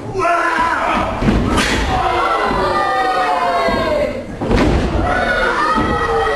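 Bodies thudding on a wrestling ring's canvas, two heavy thumps about a second and a half in and again after four and a half seconds, over a crowd of spectators shouting.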